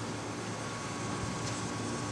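Steady background noise: an even hiss and low hum with a faint thin tone through the middle, and no distinct event.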